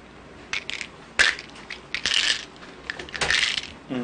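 Plastic pill bottles handled on a table: a sharp click about a second in, then tablets rattling in a bottle in two short shakes.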